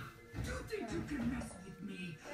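A television playing, with voices over music.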